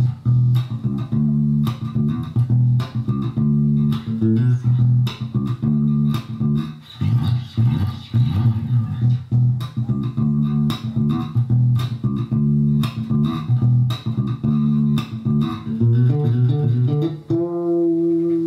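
Four-string electric bass played fingerstyle: a groove whose phrases open with a note slid along one string, repeating roughly every two seconds, with a long sliding note near the end.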